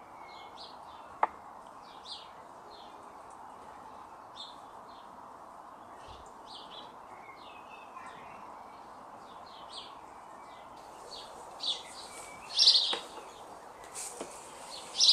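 Garden birds chirping and calling in short repeated notes over a steady background hum, with one sharp click about a second in. The birdsong gets louder in the last few seconds.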